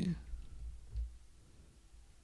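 The end of a spoken word at the very start, then quiet room tone with faint clicks and a soft low thump about a second in.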